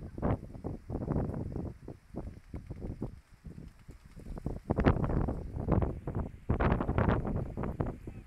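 Wind gusting against the phone's microphone, a rumbling buffet that rises and falls unevenly, strongest about five seconds in and again near the end.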